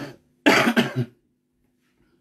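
A man coughing into his fist: a short run of two or three coughs about half a second in.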